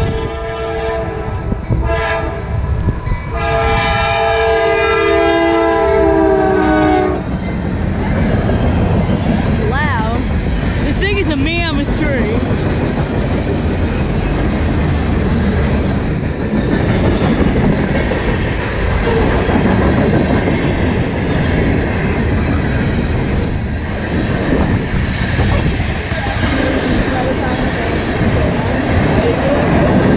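New CM44AH locomotive 7209 sounding its horn in three blasts, the last one long, ending about seven seconds in as it passes. Then the long manifest and intermodal freight train rolls by close, with steady wheel-and-rail clatter and a brief wavering squeal around ten to twelve seconds.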